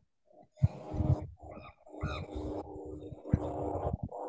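Faint voice sounds coming through a video call, quieter than the talk either side.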